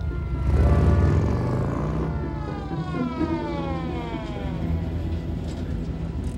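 A motorcycle engine revs loudly as the bike pulls away, then a police siren winds steadily down in pitch over several seconds as patrol cars pull up, with car engines running underneath.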